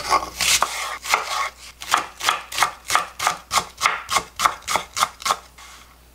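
Kitchen knife chopping a green onion on a wooden cutting board: a steady run of short knife strikes on the wood, about three a second, stopping shortly before the end.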